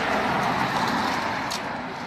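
A small motorbike's engine running as it pulls away, swelling early and then slowly fading.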